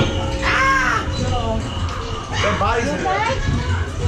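Wordless shrieking voices: one arched, rising-and-falling cry just under a second in, then a run of wavering high cries in the second half.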